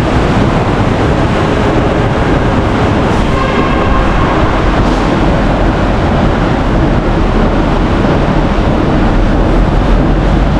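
Steady, loud rushing noise, heaviest in the low end, like air buffeting a handheld camera's microphone. Faint voices can be heard under it about three to four seconds in.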